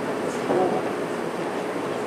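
Faint, distant speech over a steady background hiss of room noise.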